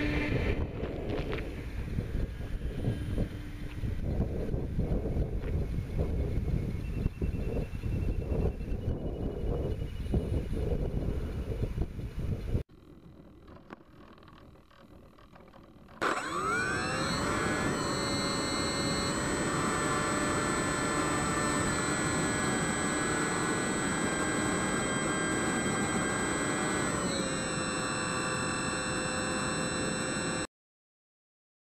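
Wind buffeting the microphone, with the electric glider's motor and propeller fading out after a hand launch. Then, about 16 seconds in, a loud steady whine from the glider's electric motor and propeller, heard close from the onboard camera, rising in pitch as it spins up and shifting a little near the end.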